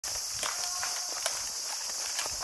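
Footsteps through dry leaf litter on a forest floor, with a few sharp crackles of snapping leaves or twigs, over a steady high-pitched hiss.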